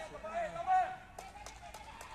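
A person's voice calling out without clear words in the first second, one drawn-out call that peaks just under a second in, followed by a few faint knocks over low background noise.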